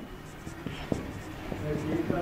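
Marker pen writing on a whiteboard: irregular short scratchy strokes and taps as letters are written.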